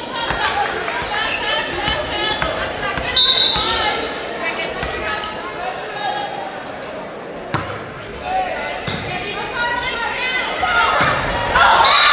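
Indoor volleyball rally in an echoing gymnasium: several sharp smacks of the ball being hit, among players' and spectators' voices calling out throughout. The voices grow louder near the end as the point finishes.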